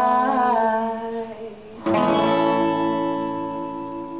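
A man's voice holds a sung note over two acoustic guitars. About two seconds in, both guitars strike a chord together that rings on and slowly fades, ending the song.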